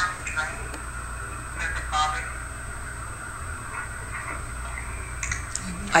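Faint, muffled voice fragments from an EVP recording being played back, heard near the start and again about two seconds in, over a steady low hum.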